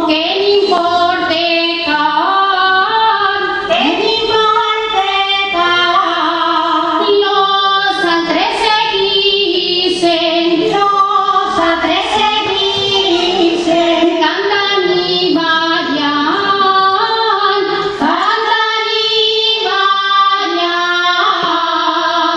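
Women's voices singing a folk song together in long, held, ornamented notes, accompanied by a group of strummed and plucked guitars and other string instruments.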